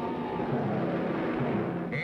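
Cartoon rocket-ship engine sound effect, a dense steady rush with a slowly falling tone, mixed with dramatic background music.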